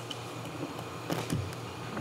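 Quiet room tone of a meeting hall: a steady hiss with a few faint clicks a little over a second in.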